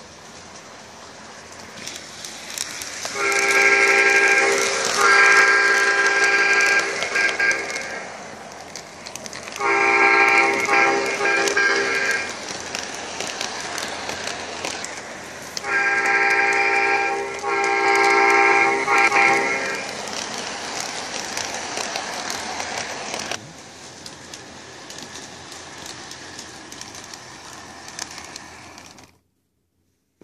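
Lionel LionChief O-scale Metro-North M7 model train running on its track while its onboard speaker sounds the horn sound effect in five chord-like blasts: two back to back, one alone, then two more. A steady running noise continues under the blasts, drops in level after the last one, and stops shortly before the end.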